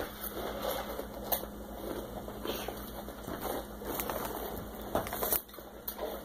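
Close-up chewing of crunchy Xxtra Hot Cheetos: soft, irregular crunches with a few sharper clicks.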